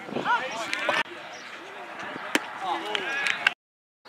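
Scattered voices of players and spectators calling out at a baseball field, with two sharp knocks in the second half. The sound cuts off suddenly about three and a half seconds in.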